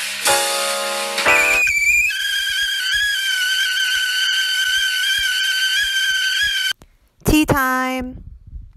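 Intro music with piano notes, then a kettle whistling steadily for about four seconds, which cuts off suddenly. A short, lower pitched tone follows near the end.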